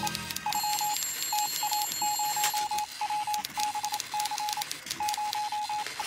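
Typewriter keys clacking in quick, irregular strokes over groups of rapid, clipped beeps on one steady pitch, like telegraph signals.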